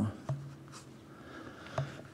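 A pause between a man's sentences: faint room sound in a small hall with a low hum, broken by two soft clicks, one just after the start and one near the end.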